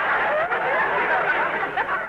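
Studio audience laughing together after a joke, a steady wave of many voices that begins to die away near the end.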